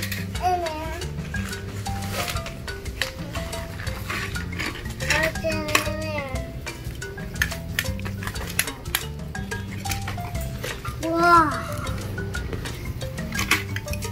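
Background music with a steady low accompaniment, under short bursts of toddler babbling and light clicks and taps of plastic bug-catcher toys being handled.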